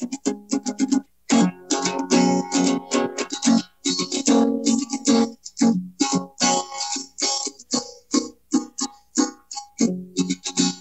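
Guitar strummed in quick, uneven chords, a short instrumental jam played live, with a brief pause about a second in.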